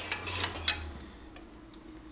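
A few light clicks of a spoon against a cooking pot while salt is stirred into pasta water, over a low hum that fades after about a second.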